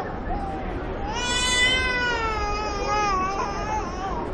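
A long wailing vocal cry about a second in, lasting a little over two seconds, rising slightly then sliding down, over faint street chatter.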